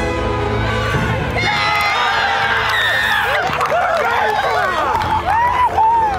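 Sideline crowd cheering and shouting with many overlapping voices, starting about a second in, as a try is scored. Background music plays underneath.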